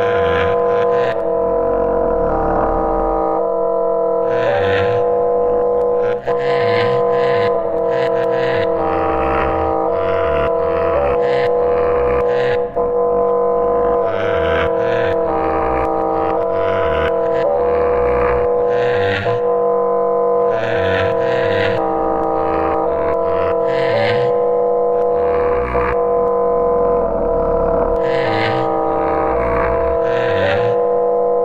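Electronic electroacoustic music built from live-coded sample playback: a sustained drone of several steady tones, with short noisy sample bursts and low thumps firing at irregular moments over it.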